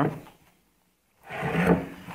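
Aluminium motorcycle cylinder head shifted by gloved hands on a workbench: a short scraping sound about a second in, after a brief dead-quiet gap.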